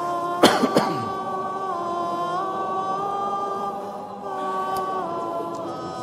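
A church congregation singing a cappella in slow chant, long held notes that step from pitch to pitch. A sharp cough cuts in about half a second in.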